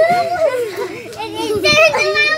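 Young boys laughing and chattering in high voices.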